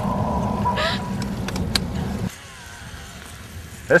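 Boat engine running with a steady low rumble while trolling. It cuts off abruptly about two seconds in, leaving quieter background hiss.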